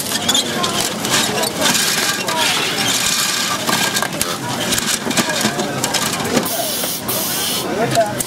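Busy assembly-floor background: indistinct voices over a steady clatter of small clicks and knocks, with a hiss lasting about a second near the end.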